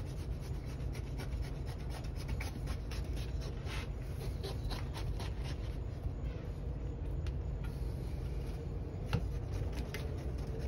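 Kitchen knife cutting into a ripe jackfruit on a wooden cutting board: irregular scraping, sawing strokes through the rind and sticky flesh, with a sharper click near the end, over a steady low hum.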